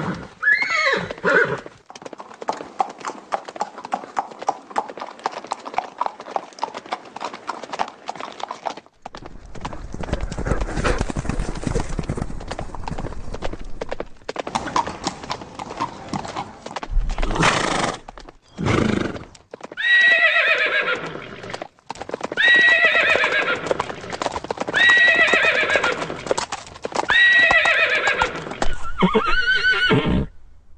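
Horse sounds: a short whinny near the start, then a long run of rapid hoofbeats that grows heavier with a low rumble about a third of the way in. Just past halfway come two short loud blasts, and in the last third a horse neighs four times in a row, about two seconds apart.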